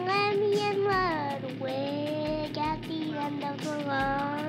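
A song playing: a high-pitched voice sings long notes that slide up and down, over a steady, quick ticking beat.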